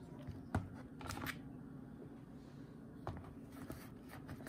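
Handling noise from a DCT470 transmission mechatronic unit (valve body) as it is turned over and set down on cardboard: a few light knocks and clicks of metal, the sharpest about half a second in.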